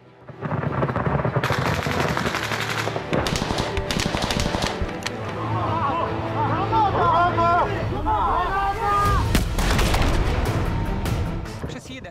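Heavy automatic gunfire: rapid machine-gun bursts mixed with rifle shots, almost without pause, starting just after the beginning. Men shout over it in the middle.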